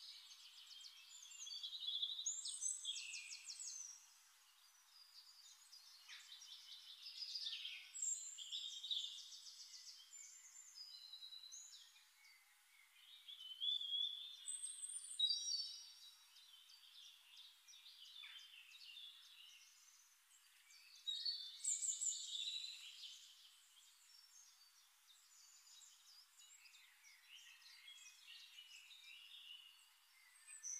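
Songbirds singing: trilled and chirping phrases a few seconds long, separated by quieter gaps.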